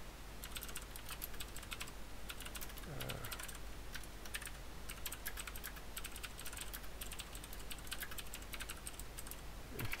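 Typing on a computer keyboard: a quick, irregular run of keystrokes, with one short 'uh' from the typist about three seconds in.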